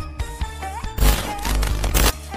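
Channel intro jingle: upbeat electronic music with a melody and bass, broken about a second in by a loud crashing hit with deep bass, and another hit near the end.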